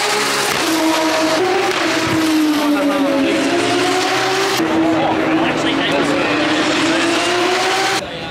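Open-wheel racing cars running at speed on the circuit, their high engine note loud and unbroken. The note dips in pitch over the first few seconds and climbs again toward the end as cars come through.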